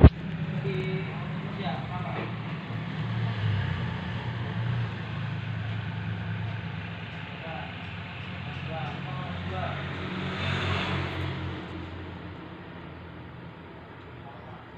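Low steady rumble of a motor vehicle engine nearby, with a brief swell of hiss about ten seconds in and faint voices in the background. A sharp click right at the start.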